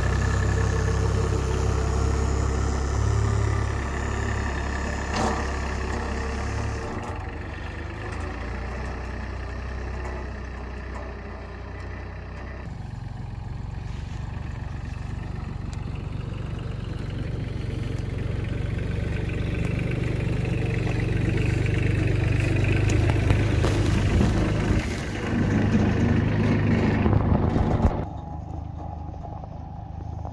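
Solis 26 compact tractor's diesel engine running steadily while the tractor pushes snow with its front blade. The sound changes abruptly a few times, most sharply near the end, where it drops and turns quieter.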